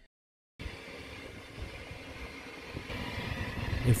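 Steady background hum of machinery with a faint whine running through it. It begins after a half-second of total silence and grows slightly louder near the end.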